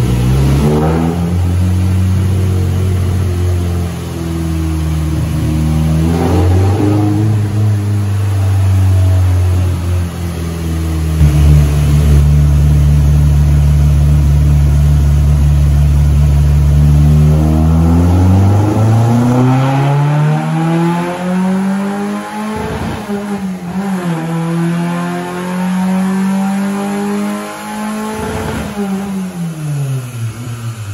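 Fiat Uno 1.6R's naturally aspirated 1.6-litre four-cylinder, fitted with a Bravo 288 camshaft and a straight-through exhaust, running under load on a chassis dynamometer during a power pull. The engine note holds steady for several seconds, then climbs sharply as it revs up, drops off and rises again near the end.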